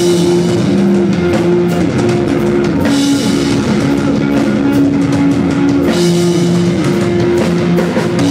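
Live rock band playing loud, with electric guitars holding chords over a drum kit with cymbals; no vocals.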